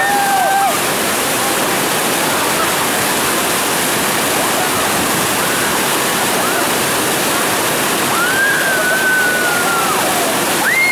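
Whitewater rapid, a loud steady rush of churning water from the hole holding the raft. High-pitched yells rise over it briefly at the start and in one long held yell near the end.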